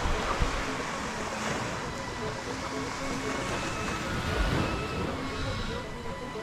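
Small surf washing onto a sandy beach, a steady rushing hiss, with wind buffeting the microphone about half a second in and again near the end. Faint music with changing notes sits underneath.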